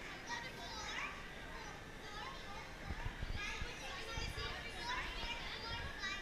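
Young children's high voices chattering and calling out over the general talk of a crowd.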